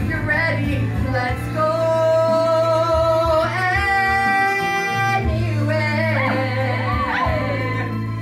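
A male singer belts a long held note, with no words, over instrumental accompaniment. The note steps up higher about halfway through, then breaks into a curling vocal run that falls away near the end.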